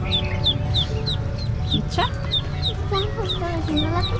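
A bird calling in a rapid series of short, high, falling chirps, about three to four a second, over background music.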